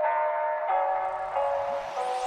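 Background electronic music: sustained synth chords that change every second or so, with a noise swell building up through the second half.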